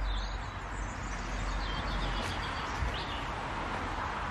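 Outdoor background noise, a steady hiss with a low rumble, with a few faint bird chirps.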